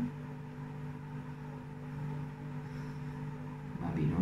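A steady low hum with several level tones, like a running appliance or fan, with faint scratching of a ballpoint pen writing on paper.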